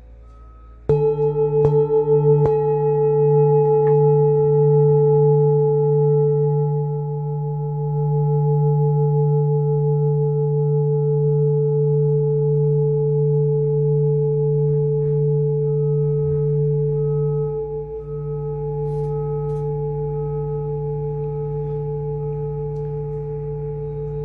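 Large Tibetan singing bowl, struck about four times in the first few seconds, then ringing on with a steady, low, wavering hum that does not die away.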